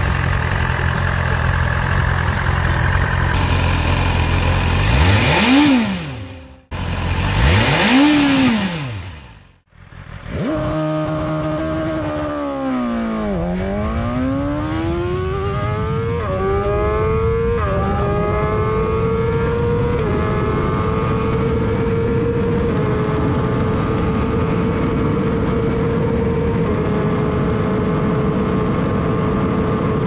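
BMW M 1000 R's inline-four engine idling, then revved twice, each rev rising and falling. After a short break, it accelerates hard at full throttle through the gears: the pitch climbs and drops back at each of several upshifts, then holds nearly steady at high speed in top gear.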